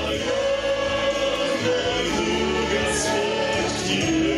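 A vocal group singing a Christian song in parts over musical backing, the voices holding long notes.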